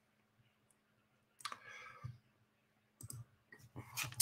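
Near silence, broken by a soft brief rustle-like noise in the middle and a few light computer mouse clicks near the end.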